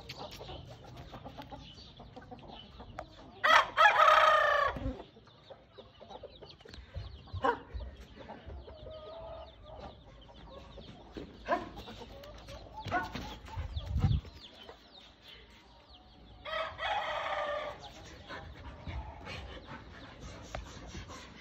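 A rooster crowing twice: once about four seconds in and again near the end, each crow about a second and a half long. A few short sharp sounds fall in between.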